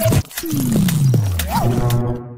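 News-channel logo sting: a sharp hit, then a long falling tone laced with clicks and a short rising-and-falling tone near the end, cutting off suddenly.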